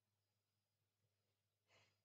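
Near silence, with one faint short breath near the end.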